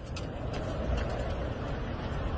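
Steady low rumble and hiss of background noise with a few faint clicks scattered through it.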